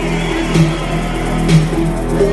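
Techno from a DJ set, played loud on a club sound system, in a stretch without the deep kick drum: held synth tones with a stronger accent about once a second.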